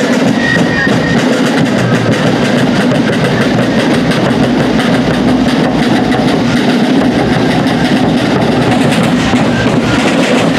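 A colonial-style fife and drum corps marching past, its rope-tension snare drums playing a steady, continuous cadence over bass drum beats, with a few fife notes in the first second.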